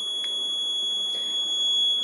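Piezo buzzer on the accident-detection board sounding one steady, high-pitched tone: the alert for a detected accident. A faint click comes about a quarter second in.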